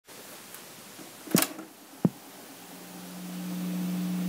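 Two sharp knocks, about a second and two seconds in, over faint hiss. A low, steady keyboard note then comes in and grows louder, leading into organ music.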